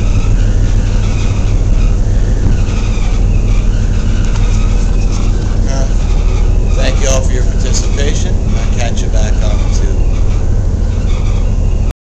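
Loud, steady low drone of a dredge's deck machinery running, with a few short knocks and faint voices about seven to nine seconds in.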